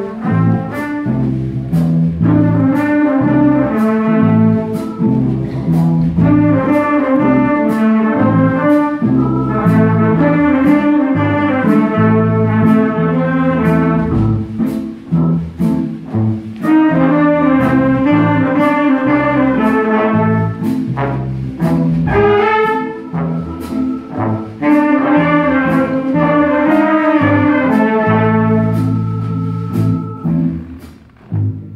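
College big band playing an instrumental stretch: brass and saxophone sections play riffs in repeated phrases of a few seconds each over a steady bass line, with a sharp tick keeping the beat about twice a second.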